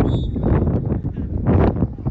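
Wind buffeting a phone's microphone, a loud uneven low rumble that surges in a gust about one and a half seconds in.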